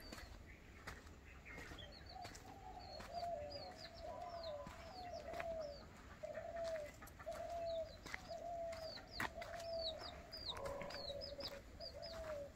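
Faint bird calls: a steady run of short, slightly falling calls, about three every two seconds, with higher chirps over them, starting about two seconds in.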